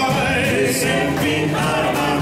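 A doo-wop vocal group singing close harmony live, several voices holding stacked notes together over a light backing of electric guitar, upright bass and drums.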